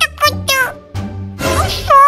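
Several short high-pitched whining cries whose pitch bends up and down, with a longer, louder cry near the end, over background music.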